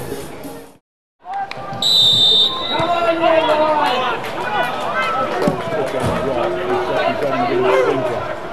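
A referee's whistle gives one short blast about two seconds in, after a brief cut in the sound. Players and spectators then shout and talk over one another, with a few thuds of the football being kicked.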